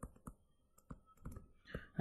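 Faint, irregular clicks and taps of a stylus on a touchscreen as a word is handwritten, a few scattered ticks over two seconds.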